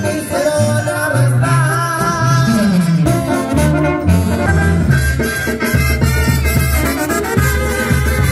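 Mexican banda music playing: brass over a bass line that moves note to note about every half second.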